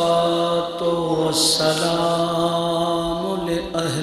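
A man's voice in melodic recitation, chanting in long held notes with brief breaths between phrases.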